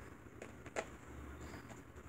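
Quiet handling of art supplies on a craft mat, with two faint light clicks less than a second in as a paintbrush is picked up.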